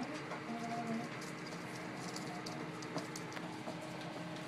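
Dogs moving about on a hardwood floor, their claws making light scattered clicks, with a short, low, steady-pitched vocalization from one of the dogs about half a second in.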